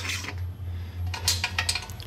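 Light clicks and taps as a cartridge fuse and a disconnect's plastic pull-out block are handled, a few of them close together in the second half, over a steady low hum.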